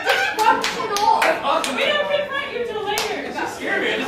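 A handful of scattered hand claps, irregular rather than in a rhythm, most of them in the first second and a half and one more about three seconds in, over people talking.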